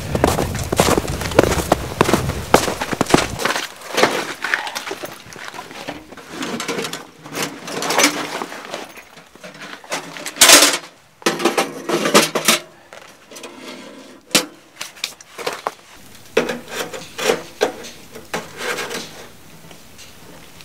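Boots crunching on snow for the first few seconds, then scattered knocks, clatters and rustles of camping gear being handled, including a small metal camp wood stove being lifted and set down on gritty ground. The loudest sound is a short scrape about ten seconds in.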